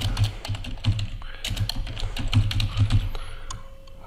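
Computer keyboard typing: a steady run of unevenly spaced key clicks.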